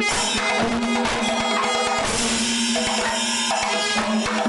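Panchavadyam temple ensemble playing: a row of timila hourglass drums beaten in fast, dense strokes, with the ensemble's cymbals ringing over them at a steady, full level.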